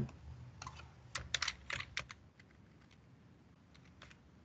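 Computer keyboard typing: a quick run of keystrokes in the first half, then a couple of faint clicks near the end.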